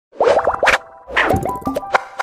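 Playful cartoon-style intro music and sound effects: quick sliding notes, short tones and sharp clicks in two loud bursts, the first about a quarter second in and the second about a second in.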